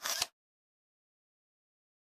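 A brief camera-shutter click in the first quarter second, then dead silence.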